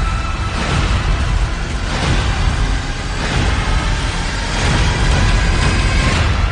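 Action-trailer soundtrack: a dense, loud low rumble with music, punctuated by a heavy hit about every second and a half.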